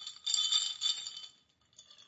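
A handheld drinking glass clinking and rattling as it is lifted to drink, with short ringing glassy tones: a cluster of clinks in the first second and one smaller clink near the end.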